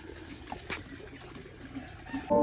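Quiet background noise, a faint even hiss with a couple of soft ticks in the first second.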